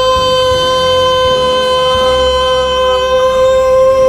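A man holds one long, steady high note, the closing "go" of the song, over a backing track.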